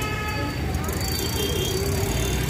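Busy street bustle: a steady rumble of traffic with people talking in the background.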